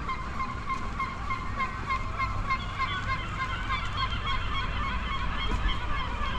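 A flock of birds calling overhead, many short calls overlapping in a continuous chatter, over a low background rumble.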